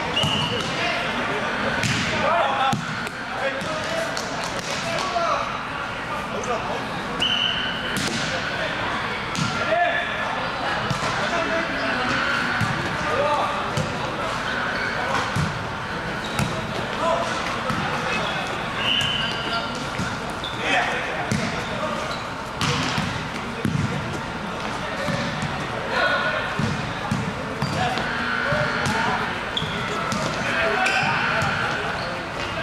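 Volleyball rally in a large gym: the ball is hit sharply again and again, with players' voices calling out over it, echoing around the hall.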